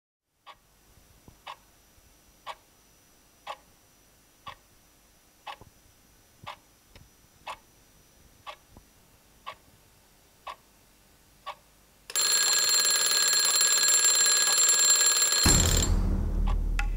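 Twin-bell alarm clock ticking about once a second, then its bells ring loudly about twelve seconds in. Near the end a hand comes down on the bells with a thump and the ringing stops.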